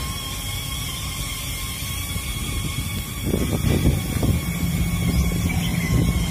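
Low engine rumble from a motor vehicle. It swells briefly a little past three seconds in, then settles into a steady hum.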